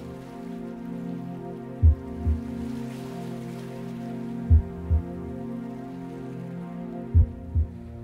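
Meditation music of sustained, overlapping Tibetan singing bowl tones, with a low heartbeat-like double thump (lub-dub) sounding three times, about every two and a half seconds.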